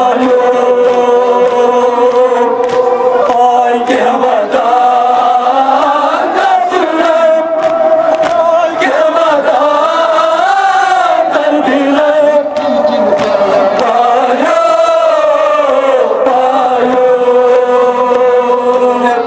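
A group of men chanting a Kashmiri noha, a Muharram lament, together in long, slowly bending sung lines.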